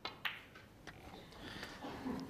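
A snooker cue striking the cue ball with a sharp click, then fainter clicks of ball hitting ball over the next second or so as the black is potted and the cue ball runs up into the pack of reds.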